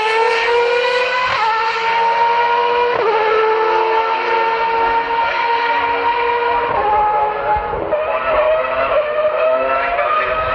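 Racing car engine running at high revs, a steady high-pitched note that climbs slowly and drops abruptly at gear changes, twice in quick succession in the second half.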